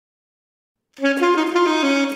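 An alto saxophone begins playing about a second in, after silence, with a run of melody notes that change every few tenths of a second.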